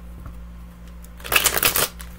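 A deck of cards being shuffled by hand: a quick, dense run of card flicks about a second and a half in, lasting about half a second.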